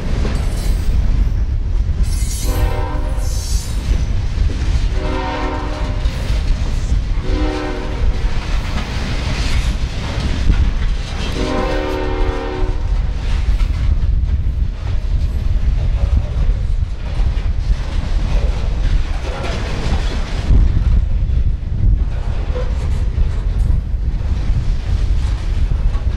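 CSX freight train passing close by: a locomotive air horn sounds four blasts in the first half, the last held longest. Under it runs the steady rumble and wheel clatter of freight cars rolling past.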